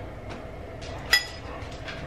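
A single short clink of a metal utensil against a ceramic bowl about a second in, ringing briefly, over quiet room tone.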